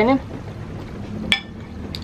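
A large metal spoon clinks once against a ceramic plate of noodles, a short sharp clink with a brief ring, over a steady low hum.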